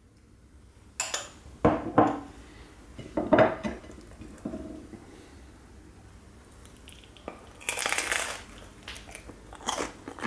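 A metal spoon clinking against a glass bowl and plate several times, then a loud crunching bite into a crisp oven-baked kebab-bread pizza about eight seconds in, followed by chewing.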